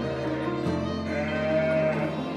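Background music with long held notes. A sheep bleats once over it in the second half, a single call lasting under a second.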